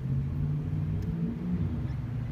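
A car engine running, a steady low rumble with a slight rise in pitch midway.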